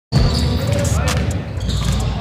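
Basketballs being dribbled on a hardwood gym floor, with repeated bounces.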